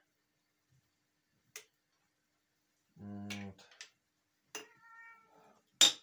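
A domestic cat meowing, a short, faint call about five seconds in, after a brief low pitched sound near three seconds. A sharp knock just before the end is the loudest sound.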